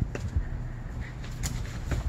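Wind rumbling on a phone microphone, with a few sharp clicks and knocks scattered through it.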